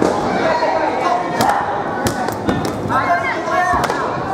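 Sports chanbara swords (air-filled foam blades) striking in a bout: several sharp smacks, a cluster of them around two seconds in and another near the end, over a hall of voices.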